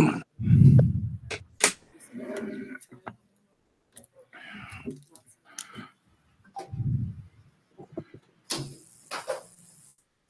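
A man clears his throat, then scattered clicks, low muffled thumps and faint murmured voices come through a video-call connection. The sound drops abruptly to silence between them.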